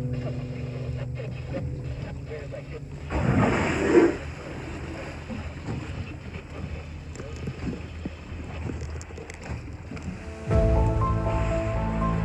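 Background music fades out. About three seconds in comes a humpback whale's blow, a loud whoosh of about a second, followed by low water noise. The music returns near the end.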